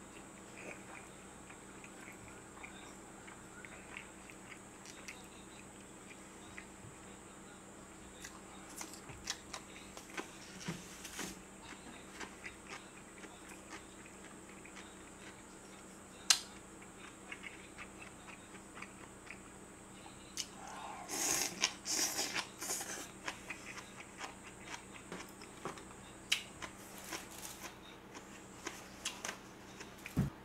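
Quiet, close-miked chewing and biting of food, with scattered small clicks of chopsticks and dishes. One sharp click comes about 16 seconds in, and a louder burst of noise around 21 seconds in. A faint steady electrical hum sits underneath.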